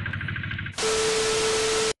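A burst of loud static hiss with a steady hum tone in it, lasting about a second, switching on abruptly near the middle and cutting off dead: an editing artefact at the join between two clips. Faint outdoor background comes before it.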